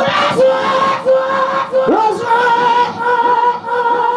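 A man singing into a microphone, holding long, high notes. About two seconds in, the voice slides between notes and then holds again.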